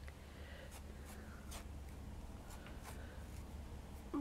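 Faint scratchy rustling of fabric and wadding, in several short strokes, as fingers push pieces of stuffing into a sewn cushion.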